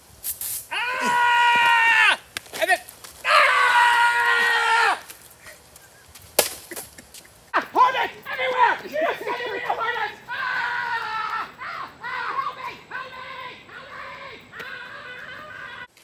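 Men yelling: two long, high-pitched yells in the first five seconds, then a stretch of excited shouting through the rest. A sharp hit sounds just before the first yell and another about six seconds in.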